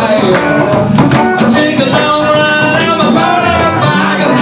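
Live band playing a rock-and-roll song with guitars and drums.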